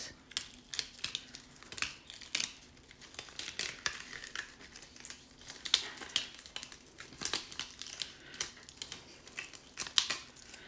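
Waste Cricut Smart Vinyl being peeled (weeded) off its backing from around a cut design, a quiet, irregular run of crackles and crinkles as the vinyl lifts away and bunches up in the hand.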